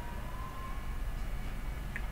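Steady low background hum and room noise from the narrator's microphone, with a faint thin tone that rises slightly over the first second.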